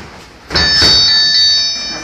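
Electronic boxing round timer sounding its end-of-round signal: a loud, steady ringing tone that starts suddenly about half a second in and breaks off and restarts a couple of times.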